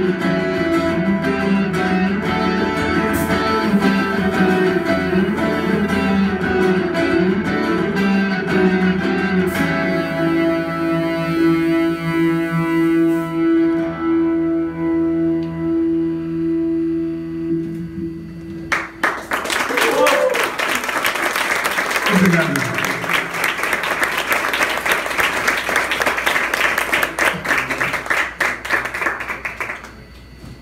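Live electric guitar and keyboard music ending on long held notes, followed about two-thirds of the way through by an audience applauding with a few shouts.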